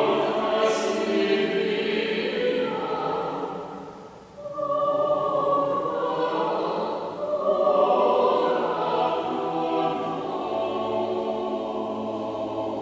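Choir singing held notes in a large church, with a short break between phrases about four seconds in.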